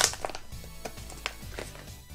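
Plastic blister pack being pried open by hand to free a small tally counter: a few light, scattered plastic clicks and crackles, under faint background music.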